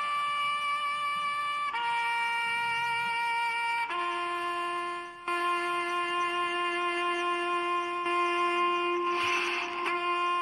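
Harmonica playing a slow tune of long, held single notes, stepping down in pitch every second or two, then one long note held for about five seconds, with a short breathy rasp near the end.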